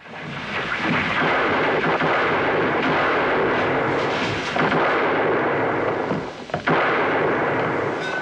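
Loud, sustained crashing and rumbling from a western film's action scene, with a couple of sharp cracks about six and a half seconds in.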